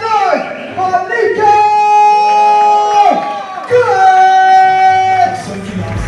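A ring announcer's amplified voice over the hall PA, drawing words out into two long held calls that fall away at the end, with crowd noise underneath.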